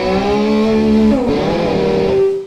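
Distorted electric guitar holding a loud chord, its pitch bending partway through, then cut off.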